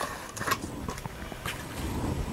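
Faint handling noise of a reel of LED light strip being taken out of its packaging: low rustling with a few light clicks.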